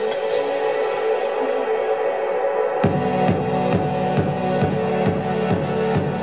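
Instrumental intro of a live song: a sustained droning chord, joined about three seconds in by a low, pulsing electronic-sounding beat at about three pulses a second.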